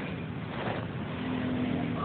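A small engine running steadily, a continuous mechanical noise with no clear rhythm.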